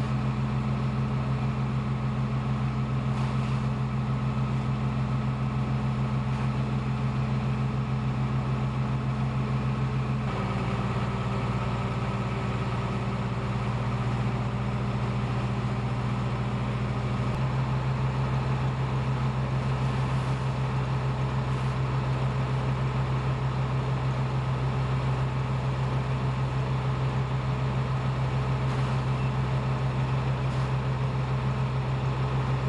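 Fire engine's diesel engine running steadily at pumping speed, a loud low drone that shifts slightly in tone twice, about ten seconds in and again near seventeen seconds.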